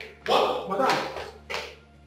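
A man's voice calling out in a few short bursts, not picked up as clear words.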